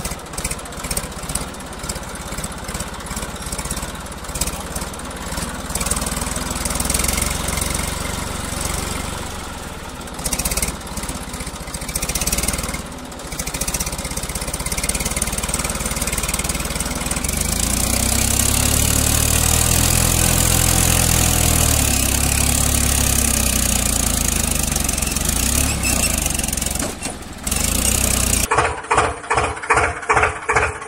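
An engine running throughout, with a slow rise and fall in pitch through the middle like a rev. Near the end the sound changes abruptly to an even chugging of about two to three beats a second.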